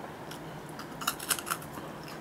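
Crisp crackling of a crunchy coated-peanut snack, Orion's squid-peanut balls, being crunched, in a quick cluster of sharp cracks about a second in.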